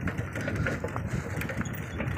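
Steady rumbling noise of riding a bicycle along a rough dirt track, with tyres rolling over the ruts and a few faint rattles.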